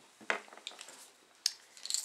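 Faint close handling sounds of braided fishing line and a hard plastic lipless crankbait being worked by hand: a few soft clicks and rustles, with one sharper tick about one and a half seconds in.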